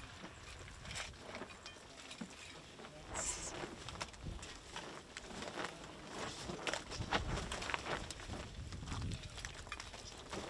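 Faint, scattered taps and rustles of gloved hands laying and smoothing wet plaster-soaked burlap strips over a foil-wrapped fossil, building its plaster field jacket.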